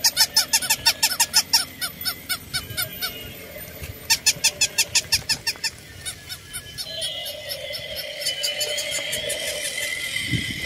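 Battery-operated plush toy poodles giving rapid electronic yaps, about five a second, in two runs, the second starting about four seconds in. From about seven seconds a steadier whine takes over.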